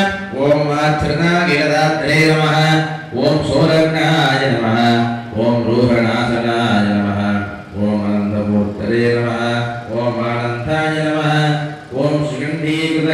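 Hindu devotional chanting by a male voice, a hymn or mantra recited on a few steady held notes in phrases of one to two seconds with short breaks for breath.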